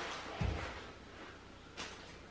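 A soft thump about half a second in, then the plastic house wrap rustling faintly as it is handled on the floor, with a brief click near the end.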